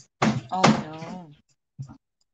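Two sudden bangs about half a second apart, with a short burst of voice over them.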